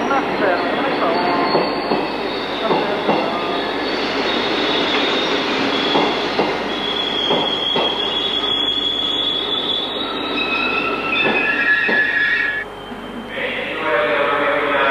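Passenger train running past close by, with a steady roar, knocks of the wheels over the rail joints and high squealing from the wheels. The noise cuts off about a second before the end.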